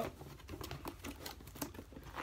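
Cardboard box flaps being folded shut and the box handled, giving a run of irregular light taps and rustles from cardboard and the loose paper slips inside.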